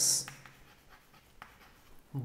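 Chalk writing on a chalkboard: a few faint taps and scratches. It opens with the hiss of the end of a spoken word.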